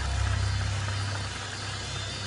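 A steady low rumbling drone with a faint even hiss above it, without speech.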